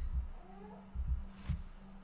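A faint, short animal call rising in pitch about half a second in, with a few soft low thumps and a short click, over a faint steady hum.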